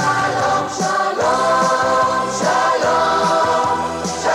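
Music: a choir singing long held notes, the chords changing every second or so.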